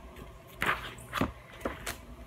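Sheets of a scrapbook paper pad being flipped: four quick papery rustles, the first about half a second in.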